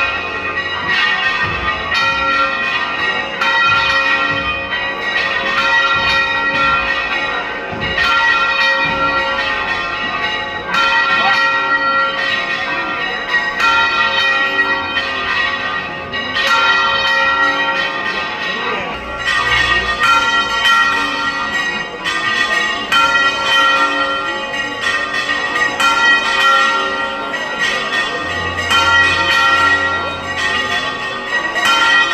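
Church bells pealing continuously: several bells of different pitch struck again and again, each ringing on into the next.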